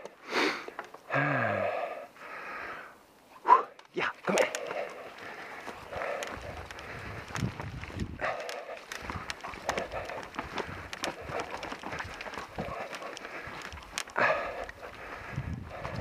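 A mountain bike rolling and rattling over a rough, muddy trail and wooden log steps, with a steady run of small clicks and knocks. A few short shouted calls come in the first few seconds and again near the end.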